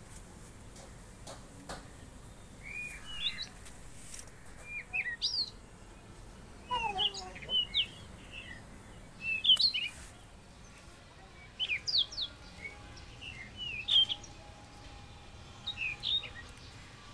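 Birds chirping: short high chirps in clusters every second or two, many sweeping down in pitch.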